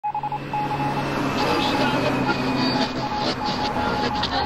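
Electronic TV-static sound effect: a hiss of interference with a steady high beeping tone that stutters rapidly at the very start, over a low hum.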